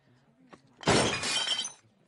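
A sudden crash of china as a teacup is knocked over and a body falls face-down onto a table, about a second in, with a brief ringing clatter that fades within a second.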